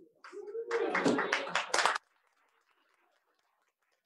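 A burst of laughter, rapid and repeated at about five pulses a second, lasting under two seconds and cut off suddenly.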